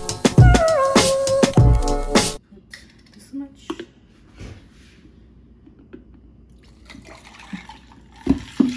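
A song with a singing voice plays loudly for about two seconds, then cuts off suddenly. After that come faint taps of a glass bottle being handled and, near the end, coffee being poured from the bottle into a glass cup.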